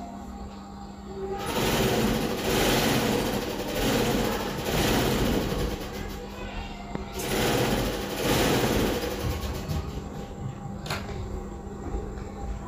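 Wire-mesh kitchen strainer being scraped and rubbed as blended tamarind and dried plum pulp is pressed through it, a rough rasping that comes in repeated strokes for several seconds and then eases off. A single sharp click comes near the end.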